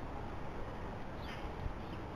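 Steady low hiss and rumble of a trail camera's microphone, with one short high chirp from a small songbird a little past halfway and a fainter one near the end.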